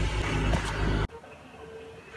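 Minivan engine idling with a steady low rumble, cut off abruptly about halfway through, followed by quiet indoor room tone with a faint steady hum.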